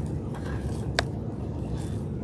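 Steady low rumble with one sharp click about halfway through, as a plastic orchid pot is worked down into a wicker basket.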